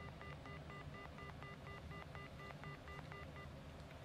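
Faint run of short electronic telephone beeps, about four a second, each a pair of tones, stopping about three and a half seconds in. It is the line signal of a mobile call that has just been cut off after the caller went silent.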